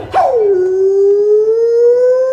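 A single voice on the show soundtrack holds one long unaccompanied note after the backing music cuts out, dipping in pitch at first and then slowly rising.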